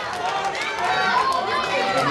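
Indistinct chatter of many overlapping voices from spectators in a hall.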